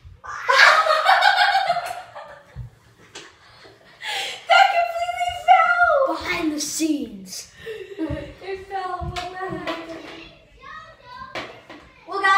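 Children's voices shrieking, exclaiming and giggling in a small tiled room, with a long high squeal near the start and a call sliding down in pitch about six seconds in. A few sharp clicks fall between the voices.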